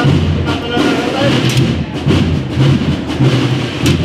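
Wind band (Spanish banda de música) playing a march, with sustained brass and woodwind chords over drums.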